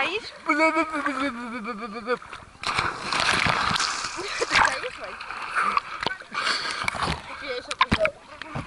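A person's long, wavering yell, then a loud splash as someone plunges into the water right at a camera sitting at the waterline. The water churns and sloshes over the lens.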